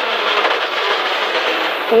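Rally car's engine and drivetrain running at speed, heard from inside the cabin as loud, steady mechanical noise.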